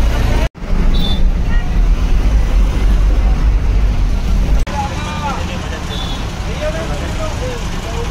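Loud, steady low rumble of a bus engine and road noise inside the driver's cab while driving through city traffic. A little past halfway it drops to quieter street and idling noise with a few brief voices.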